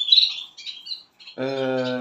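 Caged canaries chirping: a short, sharp high-pitched burst right at the start is the loudest sound, with softer chirps after it. From about a second and a half in, a man's voice holds one steady drawn-out sound.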